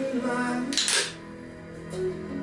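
An aluminium energy-drink can cracked open for shotgunning, a short sharp hiss-pop just under a second in, over background country music with guitar.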